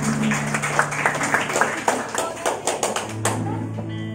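Audience clapping in welcome, a quick scattered run of claps that dies away after about three seconds, over a sustained keyboard chord that shifts to a new chord near the end.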